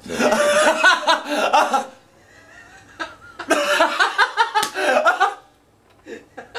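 Laughter, in two bouts of about two seconds each with a short pause between.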